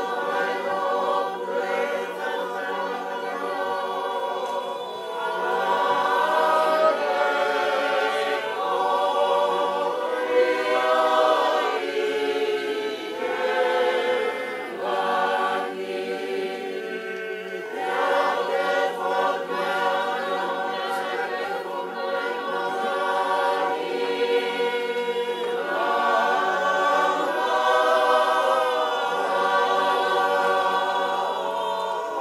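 A choir singing in several voices, in long held phrases with short breaks between them.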